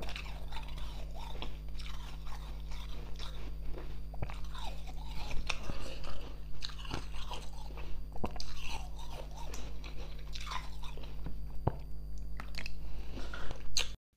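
Slushy ice being chewed and crunched in the mouth, close to a clip-on microphone: a continuous run of small crisp crunches.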